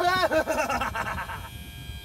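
A man's drawn-out, wordless vocal exclamation for about the first second and a half, fading near the end. Under it, the low hum of an electric-hydraulic lift pump (a Parker unit) running as it drives the cylinder that raises the outboard bracket.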